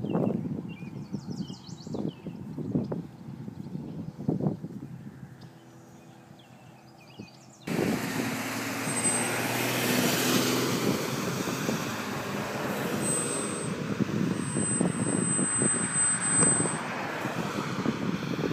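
Roadside traffic: a steady rush of cars going by at road speed, starting abruptly about eight seconds in and lasting to the end. Before that the sound is quieter, with a few soft thumps.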